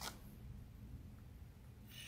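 Quiet room tone with a short handling click at the start and a faint rustle near the end.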